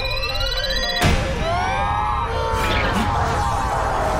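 Electronic sound effects from an anime battle: pitched tones sweep upward, a sudden hit lands about a second in, then several tones arch up and fall away over a steady low rumble.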